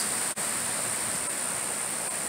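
Steady outdoor hiss with a constant high-pitched insect drone over it, broken once by a brief dropout about a third of a second in.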